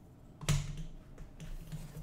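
A single knock with a dull thud about half a second in, then a few light clicks and taps: the metal parts of a nickel-plated and stainless steel paper towel holder being handled.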